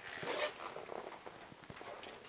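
Faint rustling and a few light knocks as an inflated dive float with its flag on rods is picked up and raised.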